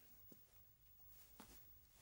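Near silence: room tone, with two faint soft ticks, one about a third of a second in and one about a second and a half in.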